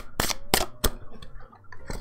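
A deck of Archangel Power Tarot cards being shuffled by hand: the cards slap together in a few short, sharp taps, three close together in the first second and a weaker one near the end.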